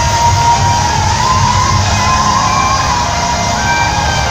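A live R&B band playing on stage, heard from the audience: a held melody line that slides in pitch over a steady bass.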